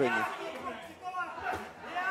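Men's voices talking, fainter than the commentary around them, over the murmur of a large indoor hall.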